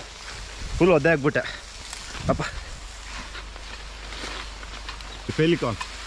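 Steady hiss of water spray from a tripod-mounted rain-gun sprinkler running, with a man talking in short bursts over it.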